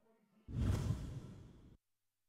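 Whoosh transition sound effect: a rush of noise that starts abruptly about half a second in and fades away over about a second.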